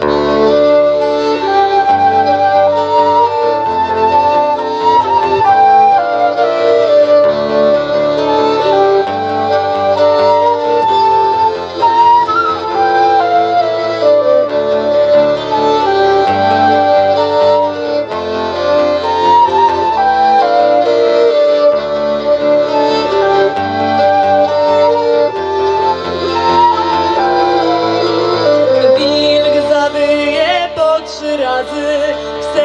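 Live acoustic folk band playing an instrumental passage: a flute and a violin carry an ornamented melody over strummed acoustic guitars and accordion.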